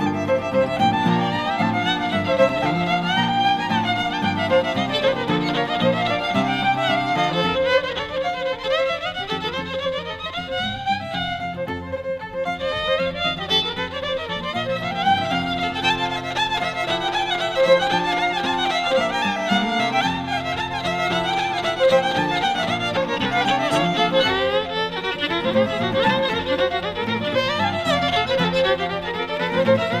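Electric violin playing a fiddle tune set, a quick run of bowed notes, over a karaoke-style backing track that carries low accompanying notes beneath the fiddle.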